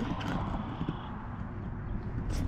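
Wind rumbling on the microphone, with soft footsteps on a concrete path.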